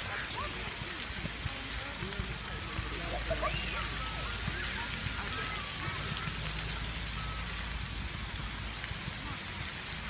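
Outdoor ambience: a steady hiss, with faint distant voices now and then.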